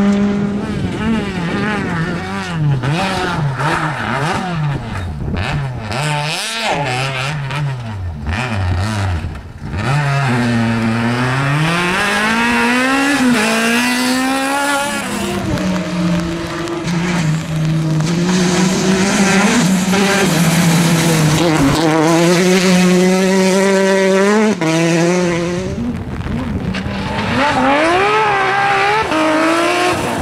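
Rally car engines at full throttle, several cars in turn. The revs rise and drop repeatedly through gear changes and lifts, with a long climb in pitch about ten seconds in.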